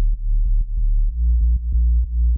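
Synth bass line playing a run of short, low repeated notes, about four a second, stepping up in pitch about halfway through.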